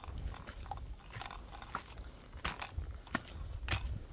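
Footsteps climbing weathered stone steps, grit crunching underfoot, with a sharp step about every half second in the second half, over a low rumble.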